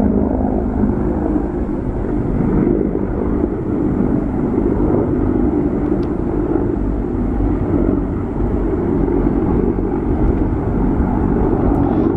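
Two military helicopters flying overhead, a steady low drone of engines and rotors with no change in level.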